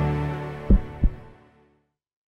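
End of a short logo intro jingle: a sustained chord fading out, with two deep thumps about a third of a second apart as it dies away.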